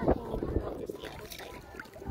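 A woman talking indistinctly over wind and water noise on a phone's microphone, with a low thump just after the start.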